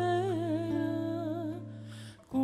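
Arbëreshë folk song: a woman's voice sings a wavering, ornamented phrase over a steady bass note. The voice dies away about a second and a half in, leaving the held bass.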